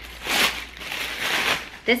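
White tissue paper crinkling as it is pulled off a glass candle jar, in two rustling bursts.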